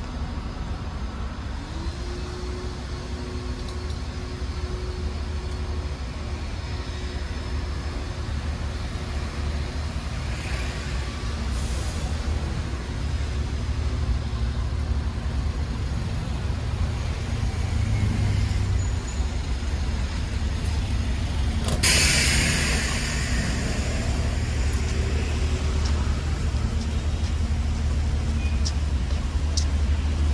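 City street traffic with a steady low engine rumble. About two-thirds of the way through, a heavy vehicle's air brake lets out a sudden loud hiss that fades over a second or two.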